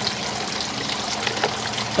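Water running steadily from a tiered garden fountain.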